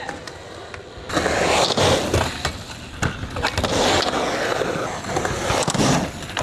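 Skateboard wheels rolling on concrete, the rolling growing loud about a second in, with several sharp clicks and knocks of the board.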